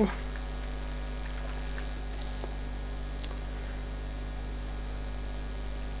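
Steady electrical mains hum in the recording, with one faint click about three seconds in.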